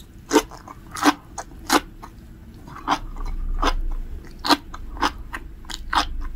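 Close-miked chewing of a mouthful of sea grapes (umibudo seaweed). The small beads burst in sharp, irregular crunchy pops, about ten in six seconds.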